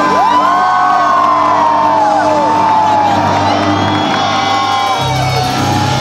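A live rock band holding out the closing chord of a song, with the crowd cheering and whooping over it. A new low bass note comes in near the end.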